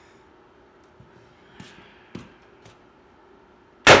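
A few faint handling clicks, then near the end one loud, sharp shot from a VKS less-lethal launcher fitted with an SSD barrel, its sound fading off over about half a second.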